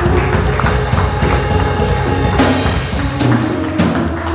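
Church praise music playing with a steady, percussive beat.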